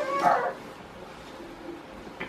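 A man's short, high-pitched whimper in the first half-second, crying in pain from the burn of the extremely hot chip, then a quiet stretch.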